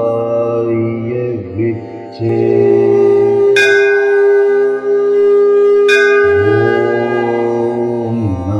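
Devotional music: a bell struck twice, a little over two seconds apart, each strike ringing on over a long steady held note, with a wavering melodic line before and after.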